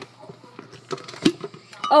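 A few light clicks and clinks of hard kitchen items being handled, unevenly spaced through the middle of an otherwise quiet moment.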